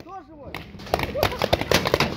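Paintball markers firing a rapid, irregular volley of sharp pops that starts about half a second in, with men shouting over it.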